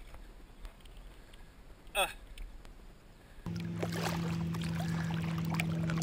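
A man's single short grunt over quiet background sound; about three and a half seconds in, the sound changes abruptly to a steady low hum.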